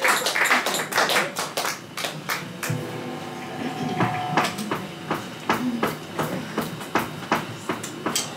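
Drumsticks ticking sharply on the drum kit, settling into a steady beat of about three to four ticks a second, leading into the next song. A short held instrument note sounds a few seconds in.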